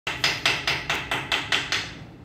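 A rapid, even series of about nine sharp knocks, roughly four or five a second, like hammering.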